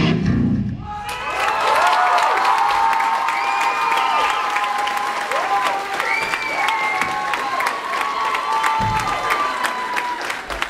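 A rock band's music cuts off about a second in, and the audience then claps and cheers, with whooping voices over the applause.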